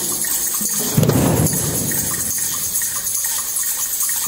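A drum circle of djembe-style hand drums and shakers played all at once in a dense, continuous rumble, surging louder about a second in.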